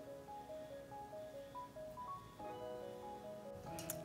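Quiet background music: a simple melody of short notes stepping up and down.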